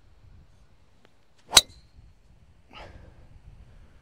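A golf driver striking the ball off the tee: one sharp crack about a second and a half in, with a brief high ring after it.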